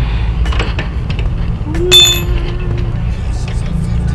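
Metal clinking while parts are handled: light scattered clicks, then one sharp ringing clink about two seconds in, over a steady low hum.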